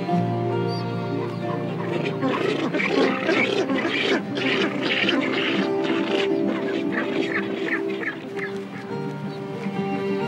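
Rockhopper penguins calling, a rapid run of rasping calls from about two seconds in until near the end, over steady background music.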